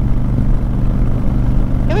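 Honda Fury's 1,312 cc V-twin engine running steadily at a constant cruising speed, heard from the rider's seat as a low, even drone.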